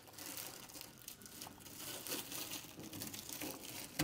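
Black plastic garbage bag crinkling faintly and irregularly as hands fold it over the trash can's inner retaining frame and push it down.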